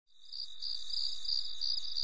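Insect chirping: a steady high-pitched trill with regular pulses about four to five times a second, fading in shortly after the start.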